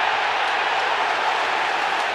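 Football stadium crowd cheering and applauding a home-side goal, a steady, loud wall of noise from thousands of fans.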